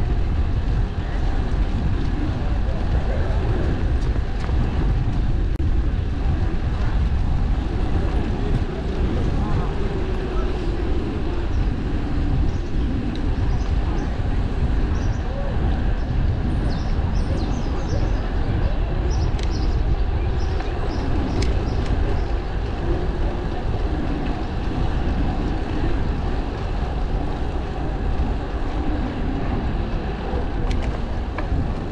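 Steady rushing of wind over the microphone of a camera riding on a moving bicycle, with low rumble from the ride.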